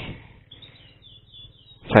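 Faint bird chirps: a few short, high notes falling in pitch, strung together between about half a second and a second and a half in.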